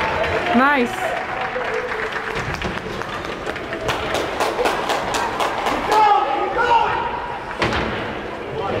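Ice hockey rink sounds during a stoppage: voices and calls from players and spectators echoing in the arena, with a quick run of sharp knocks about four seconds in and another single knock near the end.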